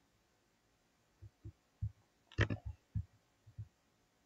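Computer mouse clicks and soft taps on a desk: a scatter of short, low, irregular taps with one sharper click about two and a half seconds in.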